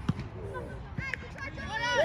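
Soccer ball thudding into the goalkeeper's hands as he catches it, with a second dull thud about a second later.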